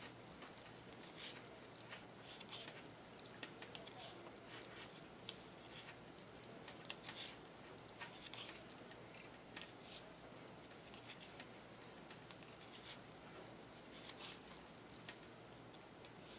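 Faint, irregular clicking and tapping of circular knitting needles as stitches are worked in a purl one, knit one moss-stitch pattern.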